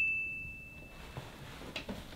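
The ringing tail of a single bright, bell-like ding, one clear tone with fainter overtones, fading away over about the first second; then faint room tone.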